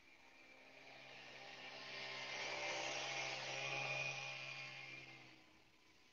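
Small 63 cc four-stroke air-cooled mini tiller engine running at a steady note while its tines churn soil. The sound grows louder over the first few seconds and fades away a little after five seconds in.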